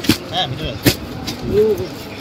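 Clear plastic packaging of a bedsheet set crackling as it is handled, with two sharp crackles: one at the start and one just under a second in.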